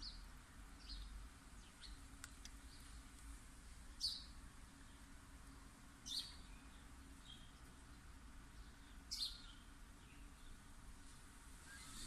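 Faint bird chirps: a few short, high notes falling in pitch, a couple of seconds apart, over a low steady hum.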